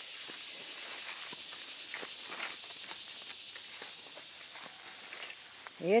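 Footsteps swishing through grass and leafy undergrowth over a steady high insect buzz.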